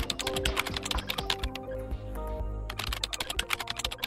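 Typing sound effect, a rapid run of key clicks, about ten a second, keeping pace with on-screen text being typed out, over soft background music.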